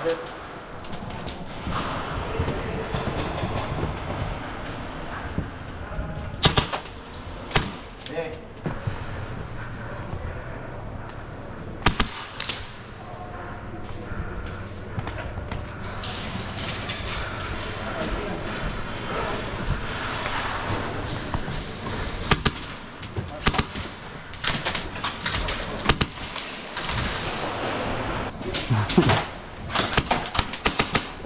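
Airsoft gunfire in scattered shots and short bursts, with other players' voices shouting in the background; the shots come thicker near the end.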